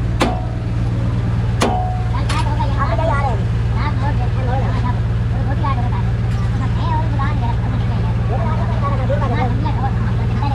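An engine idling steadily with a low hum, with a few sharp metallic knocks in the first two seconds. Indistinct voices talk in the background from about two seconds in.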